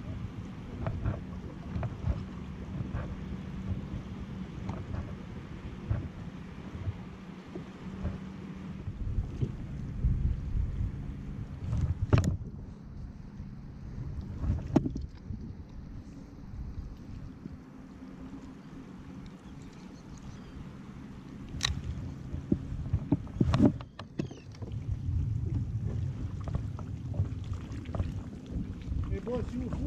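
Pedal-drive fishing kayak under way: a low rumble of water against the hull and wind on the microphone. There are four sharp knocks in the second half, the last two close together.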